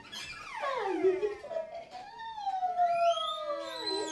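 Free-improvised music for viola, violin, cello and voice, made of long sliding pitches. Several lines fall steeply together over the first second, then swoop slowly up and down, with high rising slides near the end.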